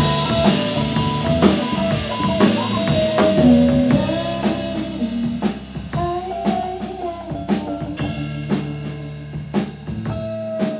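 A live band playing a rock song: a drum kit keeps a steady beat under electric and acoustic guitars and electric bass, with a melody line sliding in pitch on top.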